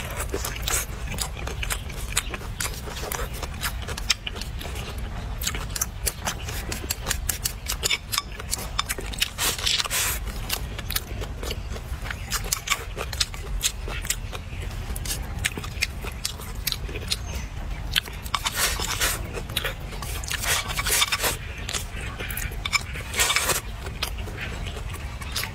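Close-mic eating sounds: a person biting and chewing stalks of leafy greens from a bowl of hot and sour noodles, a constant run of sharp, wet mouth clicks and crunches, louder in clusters around the middle and near the end. A steady low rumble sits underneath.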